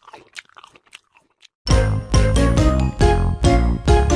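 Faint, quick crunching and munching sounds of cartoon eating, then a loud children's song intro with a steady beat starts about a second and a half in.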